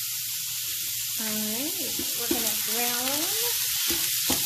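Raw ground beef sizzling in a hot electric skillet: a steady, even hiss. Near the end a spatula starts stirring and breaking up the meat against the pan.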